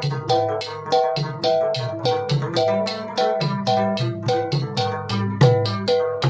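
Pashto rabab played with quick, even plectrum strokes, about five a second, picking out a repeating melodic phrase.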